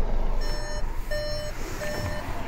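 An electronic warning beeper sounding three evenly spaced beeps, each a steady tone under half a second long, repeating about every 0.7 seconds over a low background rumble.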